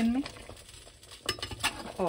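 Metal slotted spatula stirring chicken korma in a pressure cooker, scraping through the thick curry with a few quick clinks against the pot in the second half, over a faint sizzle.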